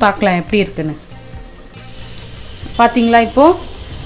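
Mutton in a thick onion-pepper masala sizzling as it fries in a nonstick pan. The sizzle is steady and gets louder and hissier about two seconds in.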